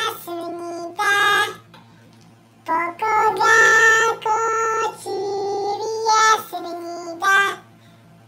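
A high-pitched, childlike singing voice in short phrases of held notes, with a pause about two seconds in and another near the end.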